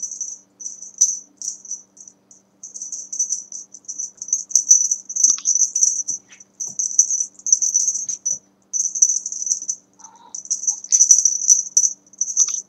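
Cat wand toy being flicked and shaken for a cat to chase, giving a high-pitched rattling jingle in irregular bursts of about a second each.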